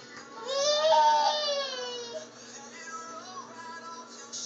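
A young child lets out one long, high-pitched squeal that rises and then falls, over music playing steadily in a small room.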